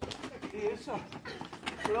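Small children's voices calling out without words. Under them is a quick run of sharp taps from running feet and a kicked ball on a rough dirt driveway, coming thicker near the end.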